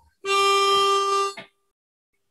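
Pitch pipe blown for one steady note lasting just over a second, giving the singers their starting pitch before an unaccompanied song.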